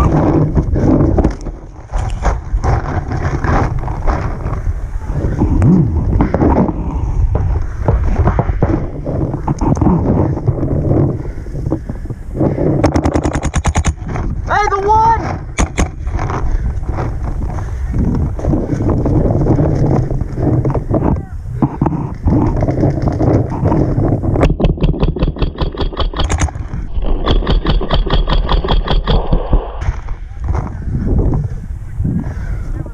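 Paintball markers firing rapid strings of shots, with very fast runs about halfway through and again near the end.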